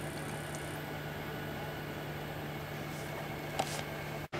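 Orion Teletrack alt-az mount's motors humming steadily as it slews on its own between panorama points, with one faint tick near the end.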